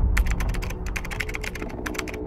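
Keyboard typing sound effect: a rapid run of light key clicks, about ten a second, over a low steady drone.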